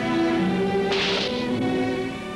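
Orchestral film score with held string notes. About a second in, a brief hissing swish cuts across the music.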